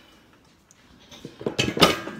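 Quiet at first, then, about a second and a half in, a quick cluster of metallic clinks and knocks as a drilled brake rotor and its caliper are handled. The loudest knock comes near the end.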